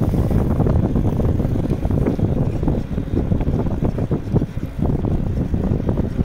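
Wind buffeting the microphone of a camera carried on a moving bicycle: a continuous choppy low rumble.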